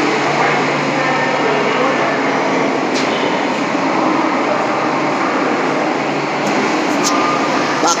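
Madrid Metro train standing at an underground platform, its steady running and ventilation noise filling the station, with a low hum in the first couple of seconds.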